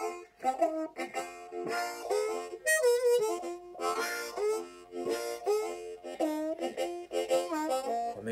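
Hohner Golden Melody diatonic harmonica in B-flat, played with cupped hands in a string of short blues phrases, several notes sliding in pitch.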